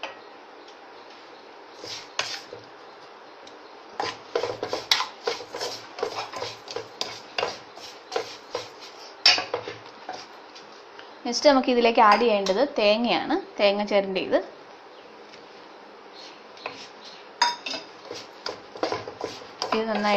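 A wooden spatula scraping and knocking against a nonstick frying pan as an egg and coconut mixture is stirred, in irregular runs of clicks and scrapes. A voice is heard briefly midway through.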